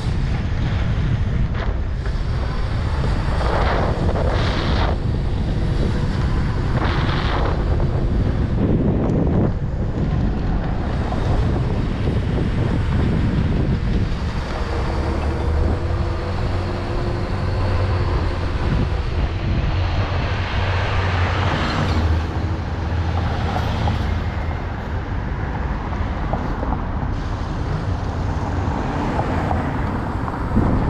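Steady wind rushing over a helmet-mounted microphone on a moving electric ride, with road and city traffic noise beneath it.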